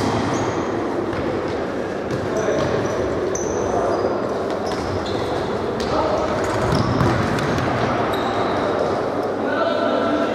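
Indoor futsal play in a sports hall: the ball being kicked and bouncing on the court, with short high squeaks of shoes on the floor and players calling out, echoing in the hall.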